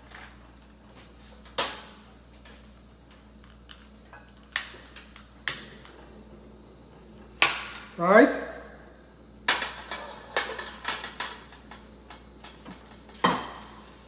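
A few sharp ignition clicks, a second or more apart, as a portable gas stove's burner is lit. Then, from about nine seconds in, a quick run of metal knocks and clinks as a steel wok is set on the burner.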